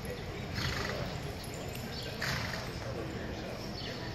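Horses and cattle moving about in the soft dirt of an indoor arena during cutting herd work, heard as a low steady rumble with two short noisy rushes, about half a second in and about two seconds in.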